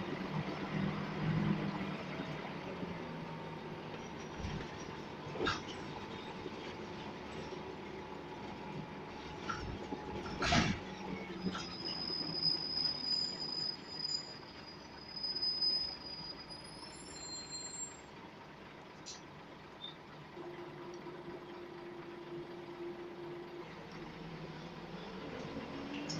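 Scania L94UB Wright Solar bus heard from inside the saloon while under way: a steady diesel engine hum and road noise with small rattles. A sharp knock comes about ten seconds in, followed by a high-pitched squeal lasting about five seconds.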